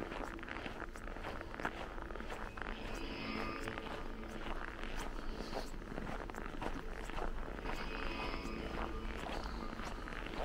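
Footsteps walking on a snow-covered pavement, a string of irregular short crunches over a steady low rumble.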